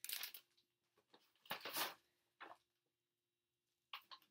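Plastic zip-top bag of moon sand rustling in short bursts as it is handled and set down, about three bursts in the first two and a half seconds, the longest one about a second and a half in.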